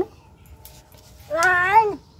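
A small child's high voice calling out one drawn-out word about a second and a half in, rising then falling in pitch, in the middle of counting aloud.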